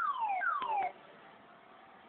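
Car alarm giving two quick electronic chirps, each falling in pitch over about half a second, both over within the first second.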